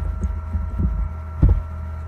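Computer keyboard keystrokes heard as about six short, dull thumps, the last and loudest about one and a half seconds in, over a steady low electrical hum.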